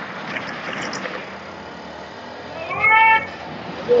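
A single loud, high-pitched shout about three seconds in, rising in pitch and then held briefly, over a low street-noise background with a few faint sharp cracks in the first second.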